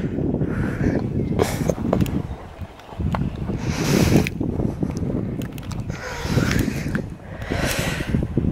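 Wind buffeting the camera microphone outdoors: a gusty low rumble that swells and eases several times, with a brief lull about two and a half seconds in.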